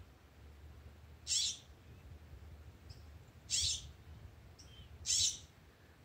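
A bird calling: three short, buzzy, high-pitched calls spaced a couple of seconds apart.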